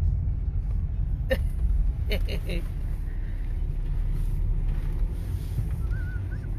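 Steady low road and engine rumble of a moving car, heard from inside the cabin. A short voice-like sound comes about a second in, and three quick ones follow around two seconds.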